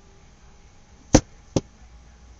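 Two sharp clicks about half a second apart, the first louder: the headset's boom microphone being knocked as it is handled.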